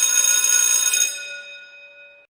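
A bell ringing: a cluster of steady, bright ringing tones that holds for the first second and then dies away over the second half.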